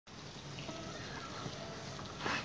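Faint hiss with a few soft, short ringing tones from acoustic guitar strings lightly touched before the strumming begins.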